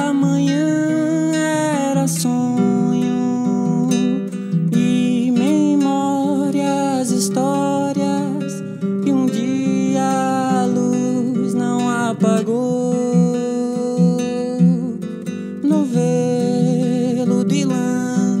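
Nylon-string classical guitar played alongside a man singing, in a solo acoustic song. The voice sings long, gliding notes over steady, ringing guitar chords.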